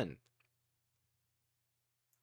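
The tail of a spoken word ends just after the start, then two faint clicks, then near silence with a faint low electrical hum.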